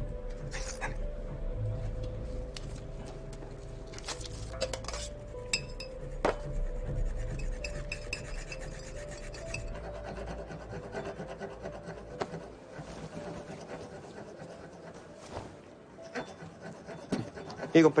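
Rasping, scraping sounds with a few sharp knocks and clinks, over a low sustained drone that fades out a little past the middle.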